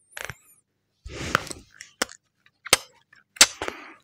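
A folded Samsung Galaxy Z Flip 4 handled close to the microphone: four sharp clicks about two-thirds of a second apart, with short rustling.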